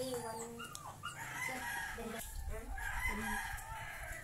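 A rooster crowing in the background: long drawn-out calls starting about a second in.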